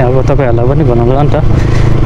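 A motorcycle engine running steadily at cruising speed, with a low drone of engine and wind noise on the helmet-mounted microphone, and a man talking over it.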